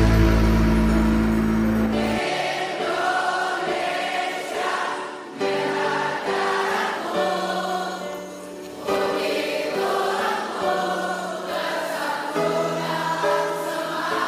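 A choir of girls' voices singing together in unison into microphones, starting about two seconds in after a loud held low chord fades.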